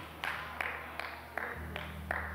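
A quiet pause filled with a few sharp, evenly spaced claps, about two and a half a second. A low held musical note swells in about halfway through.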